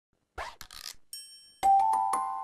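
Short animated-logo intro jingle: a few quick swishes, then a high sparkling chime, then bell-like mallet notes struck in quick succession from about one and a half seconds in, ringing on.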